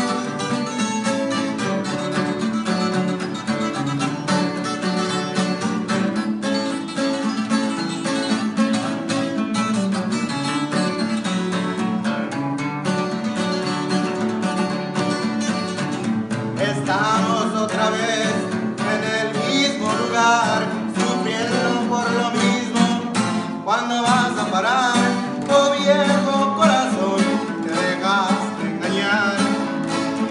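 Two acoustic guitars, one a twelve-string, playing a song's instrumental intro with quick plucked and strummed notes. About halfway through, singing voices come in over the guitars.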